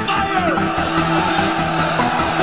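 Electronic techno track with a steady kick-drum beat under sustained synth tones. A short downward pitch sweep falls in the first half second.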